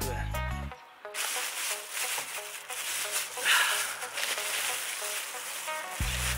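Background music that stops about a second in, followed by paper wrapping crinkling and rustling as it is handled, loudest around the middle.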